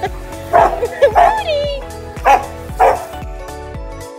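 A dog barking four times over background music. The second bark runs into a drawn-out whine that wavers in pitch.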